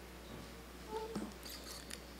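A floor microphone being handled as it is lifted toward the mouth: a brief squeak and a few soft clicks about a second in, over a steady low hum.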